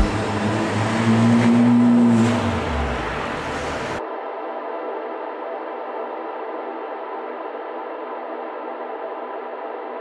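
Honda City Hatchback with a Max Racing aftermarket exhaust and intake driving, its engine rising in pitch as it accelerates and then easing off. About four seconds in it cuts off suddenly, replaced by a steady ringing, gong-like tone of end-screen music.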